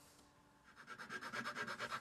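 A hand file scraping in fast, even back-and-forth strokes, starting under a second in.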